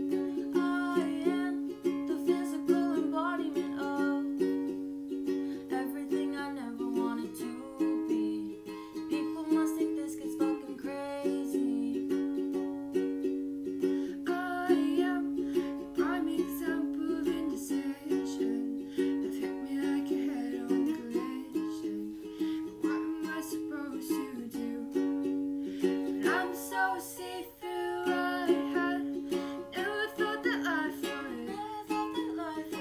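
A ukulele strummed in a steady rhythm, with a woman singing a melody over it.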